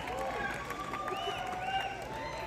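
Concert audience waiting between songs: many people talking and calling out at once, with a few high shouts over the crowd murmur.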